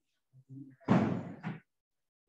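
A brief murmur of voice, then a sudden loud thump about a second in that dies away, followed by a second sharper knock half a second later.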